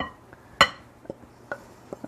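Dry ingredients scraped out of a ceramic bowl with a wooden spoon into a glass mixing bowl: a few light knocks and clinks of spoon and bowls, the loudest about half a second in with a brief ring.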